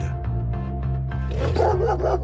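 Background music, joined about one and a half seconds in by a dog barking in quick succession, about five barks a second.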